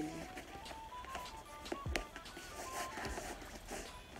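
Soft background music with a simple stepping melody, over a few sharp handling clicks from a bag strap being taken off, the loudest about two seconds in.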